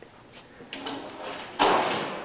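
Corrugated metal sheets scraping as they are slid into place to cover a barbecue pit. A faint scrape comes first, then a louder one near the end.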